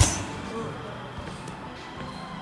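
A kick landing with one sharp smack on a Muay Thai trainer's belly pad, right at the start, followed by a steady low background.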